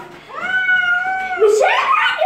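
Cat meowing once, one long call of about a second held at an even pitch.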